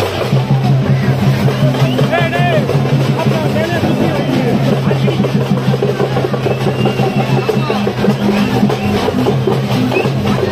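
Loud festival procession music with fast, dense drumming and voices over a steady low hum, with a few short high wavering tones about two seconds in.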